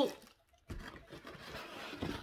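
Soft rustling of packaging, plastic wrap and cardboard, as a plastic-bagged laminator is handled in its box, starting after a brief pause under a second in.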